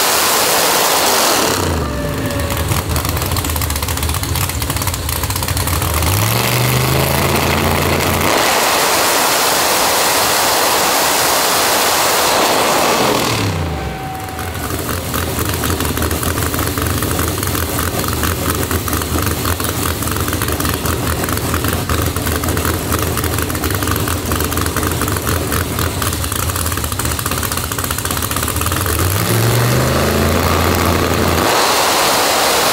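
Drag-race Mustang's V8 run hard on a hub dyno. It is at full throttle at first and falls to a steady lower speed. It then revs up into a second full-throttle pull of about five seconds and drops back to idle. Near the end it begins to rev up again.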